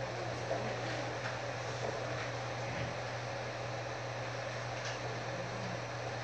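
Room tone in a pause between spoken phrases: a steady low hum over an even background hiss.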